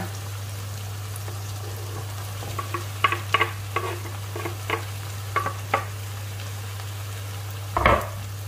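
Tofu cubes pushed off a wooden cutting board with a knife into a frying pan of sautéing vegetables: a run of short knocks and taps over faint frying and a steady low hum, with one louder knock near the end.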